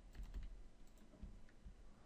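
Faint computer keyboard keystrokes: a few scattered taps of single keys.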